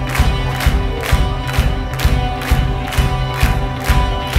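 Indie rock band playing live, with electric guitars and keyboard over drums keeping a steady beat of about two hits a second.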